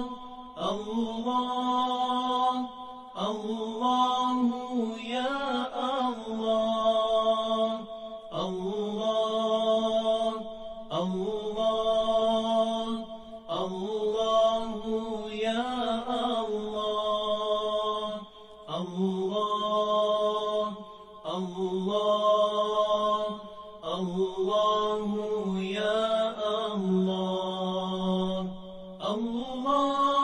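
A solo voice chanting a devotional Arabic-style melody in regular phrases about every two and a half seconds, each with long held, ornamented notes.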